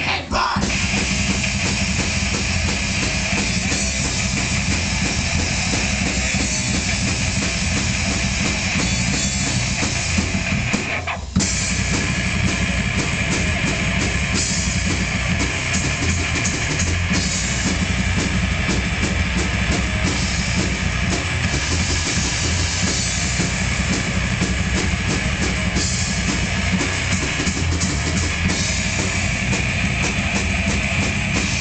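Death metal band playing live: rapid drumming with heavy bass drum under distorted electric guitars, loud and dense. The sound breaks for an instant just after the start and again about eleven seconds in.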